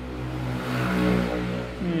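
A motor vehicle's engine passing by, swelling to its loudest about a second in and then fading, over a steady low hum.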